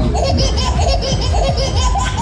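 Riders on a spinning Tagada fairground ride laughing, many high-pitched voices at once, over loud fairground music with a steady heavy bass.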